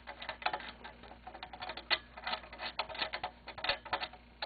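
Rapid, irregular light clicks and ticks of a threaded clamp screw being turned by hand in a small metal clamp.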